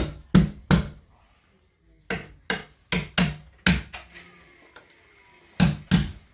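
Cordless drill driving screws through a metal TV wall-mount bracket into the wall, heard as sharp knocks about two or three a second. The knocks stop for about a second soon after the start, then come again in a second run and twice more near the end.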